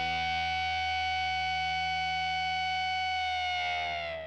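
Closing chord of a rock track: a distorted electric guitar chord held and ringing out steadily, its pitch sagging slightly near the end as it begins to fade.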